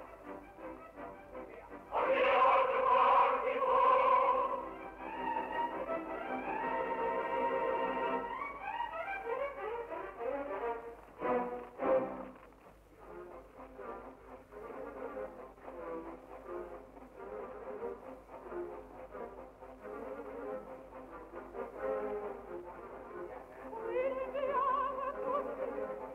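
Opera orchestra playing: loud chords about two seconds in, then held notes and quick running figures with two sharp accents, settling into a quieter passage.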